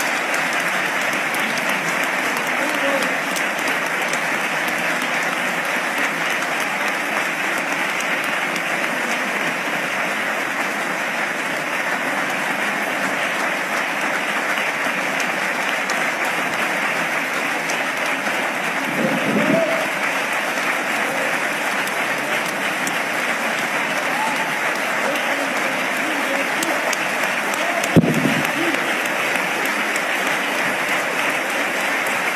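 A large audience applauding steadily after a speech. A voice or two calls out briefly about two-thirds of the way through and again near the end.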